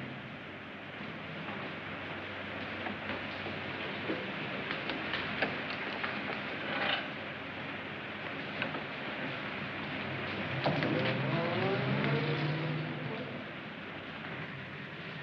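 A 1940s car's engine running as the car drives through a gate. Its note rises and changes pitch about ten and a half seconds in, over the steady hiss of an old film soundtrack, with a few scattered clicks.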